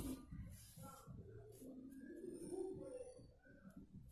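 Faint handling of a crocheted doll and yarn as a needle and yarn are worked through it: soft rustles and light knocks. Faint short bird-like calls sound in the background.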